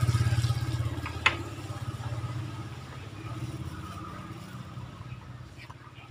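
An engine running close by with a steady low pulse, fading away over a few seconds; a single sharp click sounds about a second in.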